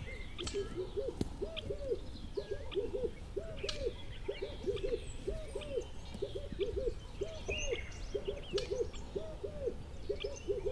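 Low hooting calls, short arched notes in quick runs of two or three, repeated without pause, with scattered high bird chirps above them.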